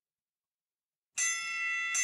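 Silence, then about a second in a bell-like chime sound effect starts abruptly: several steady ringing tones together, struck again near the end.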